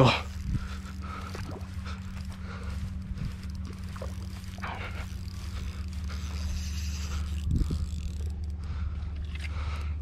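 Spinning reel working under load as line is fought against a hooked wels catfish on ultralight tackle: faint mechanical whirring and scraping over a steady low hum.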